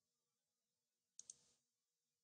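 Near silence, broken a little over a second in by two quick computer mouse clicks, a tenth of a second apart.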